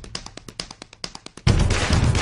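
A quick run of tap-dance taps, about eight to ten a second, alone over the dropped-out music. About one and a half seconds in, the full dance band comes crashing back in.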